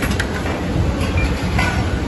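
Steady low rumbling din of a large, crowded hall with ceiling fans running, broken by a few short clinks of steel utensils, two near the start and one about one and a half seconds in.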